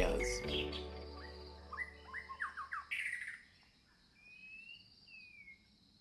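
Small birds chirping: a quick run of short chirps, then two longer gliding whistled notes near the end, while the tail of a music track fades out at the start.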